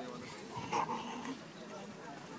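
A baby gives a brief whimper just under a second in, over a low murmur of people talking.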